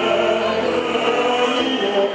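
A man singing a song live in an operatic style over a choral backing track, holding long notes.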